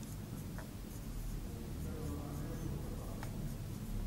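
Marker pen writing on a whiteboard: faint strokes and scratches of the felt tip on the board.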